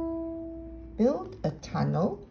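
A single piano note on a Yamaha piano, struck just before, ringing on and fading away through the first second. A voice starts speaking about a second in.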